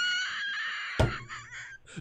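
A man laughing in a high-pitched, held squeal for most of two seconds, with a thump about a second in.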